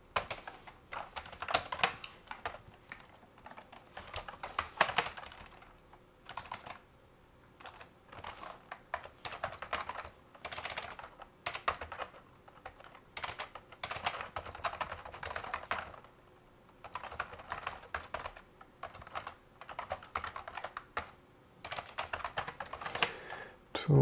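Typing on a computer keyboard: runs of quick keystroke clicks broken by short pauses.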